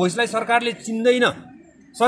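A man speaking; his voice falls away about one and a half seconds in.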